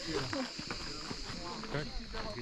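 People's voices talking, not close to the microphone, over a steady high-pitched buzz that runs unchanged throughout.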